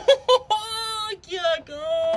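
Speech only: a man's excited, high-pitched exclamation, "¡Qué loco!", drawn out so that it sounds almost sung.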